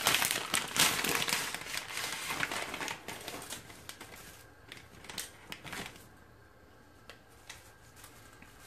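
Crinkling of a spaghetti package and rattling of dry spaghetti strands as they are tipped out into a pan of water: a dense run of crackles and clicks that thins out and fades over the last few seconds.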